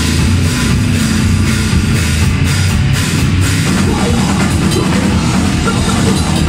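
Grindcore band playing live at full volume: heavily distorted electric guitars and bass over a drum kit, one continuous wall of sound with no breaks.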